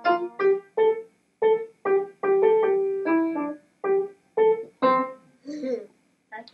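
Upright piano played by a child, a slow melody of about a dozen mostly single notes that ends about five seconds in. A short vocal sound follows near the end.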